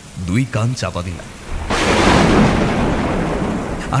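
A close thunderclap sound effect: a sudden loud crack of thunder about a second and a half in, rumbling on and slowly fading over the next two seconds.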